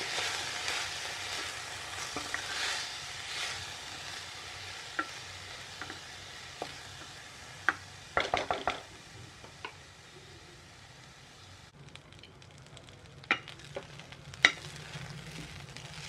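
Soaked rice and moong dal sizzling in hot ghee in a nonstick kadhai over a high flame while a wooden spatula stirs them. The sizzle is strongest in the first few seconds and then fades. Scattered sharp knocks and scrapes of the spatula against the pan come through it.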